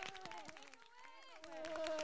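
Faint, overlapping voices and a few scattered handclaps in a lull, the sound dipping low about a second in, then a couple of voices holding notes near the end.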